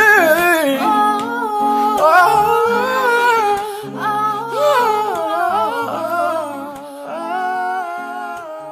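A man and a woman singing wordless R&B vocal runs together, their voices winding up and down over held acoustic guitar chords. The music grows softer near the end.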